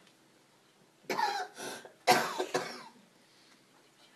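A person coughing in two short bouts, the first about a second in and the second a second later.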